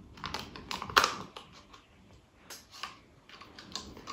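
Thin plastic cup crackling and clicking as it is handled and poked with a pencil point to make a hole in it: a string of irregular sharp clicks, the loudest about a second in.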